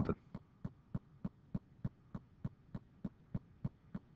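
Faint, regular ticking, about three short ticks a second.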